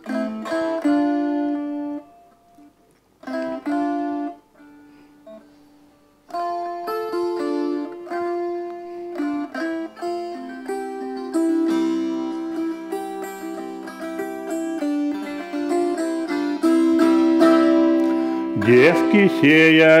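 Russian gusli, a lap-held wooden psaltery, with its strings plucked by both hands in the instrumental introduction to a folk song: a few ringing chords, a pause of a few seconds, then a continuous melody with overlapping ringing notes. A man's singing voice comes in near the end.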